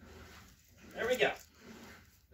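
A brief, loud voice sound about a second in, over quiet rustling of cloth being handled.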